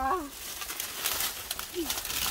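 A woman's voice trails off just after the start, then faint irregular rustling and a short falling vocal sound near the end.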